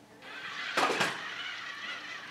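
Small toy robot (Wonder Workshop Dash) driving, its wheel motors whirring, with two sharp knocks just under a second in as it rolls off the foam play mat onto the rug.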